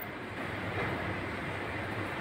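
Steady background noise of the room, an even low rumble and hiss with no distinct events.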